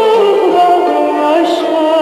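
A woman singing a Turkish song over instrumental accompaniment, holding long notes with vibrato. A new note begins about half a second in.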